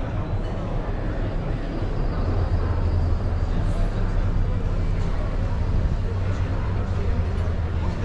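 A car driving slowly past and away over cobblestones, a low rumble that swells from about two seconds in, with voices chattering in the background.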